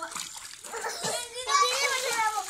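Water splashing and rippling in a steaming hot-spring pool, with a child's high voice talking loudly over it from about one and a half seconds in.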